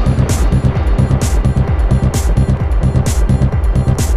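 Instrumental passage of a progressive trance track: a driving electronic beat over a rapidly pulsing bass line, with a bright cymbal-like hit about once a second.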